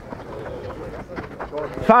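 Faint background voices and general outdoor noise between calls, then a man's voice calling "fast" near the end.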